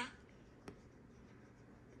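A single light tap of a stylus tip on a tablet's glass screen about two-thirds of a second in, against otherwise near-silent room tone.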